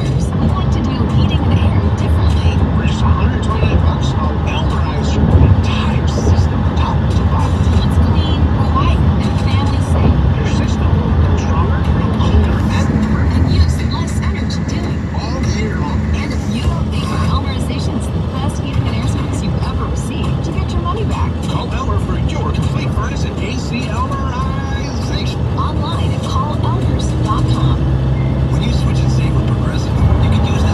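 Indistinct talking and music from a broadcast over a steady low rumble.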